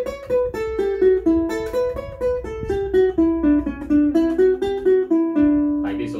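Ukulele playing an eighth-note scale exercise, single plucked notes at about four a second, running from an A7 (A Mixolydian) phrase into D major. The line moves mostly downward and ends on a held low note near the end.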